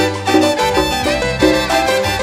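Marimba orquesta playing upbeat Latin dance music live, with saxophones over marimba and a steady bass line.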